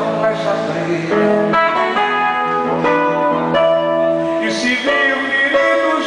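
Acoustic guitar played live, a plucked melody of changing single notes and chords ringing steadily.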